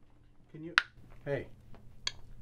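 A bubble-gum bubble popping with one sharp snap a little under a second in, with short wordless voice sounds just before it and about half a second after, the second falling in pitch.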